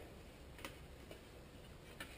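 Near silence with two faint clicks as a small stamped sheet-metal folding pocket stove is handled and opened out.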